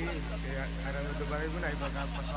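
Faint, indistinct talk through the stage microphone over a steady low electrical hum from the PA sound system.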